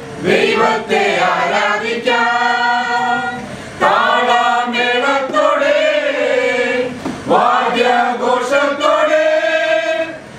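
A mixed group of women and men singing a Malayalam Christian song together, in long held phrases with short breaks about four and seven seconds in.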